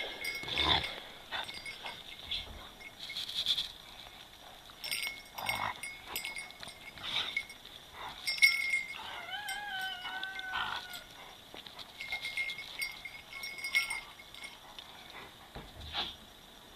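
Akitas play-wrestling, giving short high whines and yelps, with one drawn-out wavering whine about nine seconds in, over scuffling and clicking.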